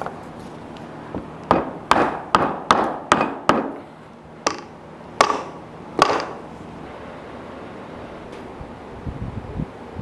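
Small wooden rocking chair being knocked to seat a freshly glued arm joint: about six quick sharp knocks on the wood, then three more spaced out, stopping about six seconds in.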